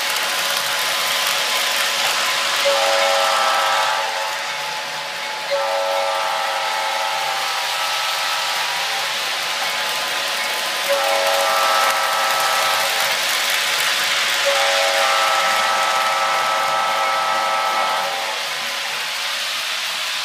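Toy train engines' electronic horn sounding four blasts of one to three seconds each, over the steady whirring rattle of the trains running along the track.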